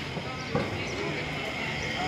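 Street ambience: people talking in the background, with a single sharp knock about half a second in.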